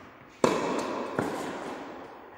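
Tennis ball struck by a racket on a forehand: a sharp pop about half a second in, ringing on with a long echo in a large indoor hall, then a second, fainter impact about three quarters of a second later.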